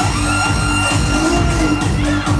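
Electronic dance music played loud through a club sound system during a live DJ set: a heavy, steady bass beat under a high held synth tone.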